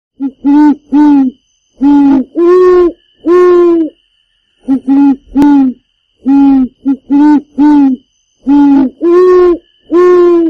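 A series of loud owl hoots in repeating phrases: two or three short hoots followed by two or three longer, drawn-out ones, about fifteen in all.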